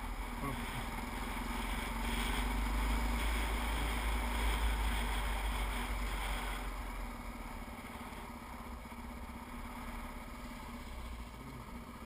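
Dirt bike engine running while riding, heard through a bike-mounted camera with wind rumbling on the microphone. It is loudest in the middle and eases off in the last few seconds as the bike slows for a turn.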